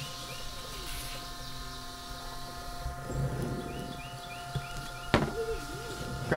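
WD-40 aerosol spraying in a faint hiss for about the first three seconds, over a steady background hum made of several held tones from a motor. A few short chirps come about halfway through, and a single knock sounds near the end.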